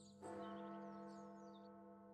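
A faint large bell ringing, struck again about a quarter second in, its tones held long and slowly fading. Faint high chirps sound over it.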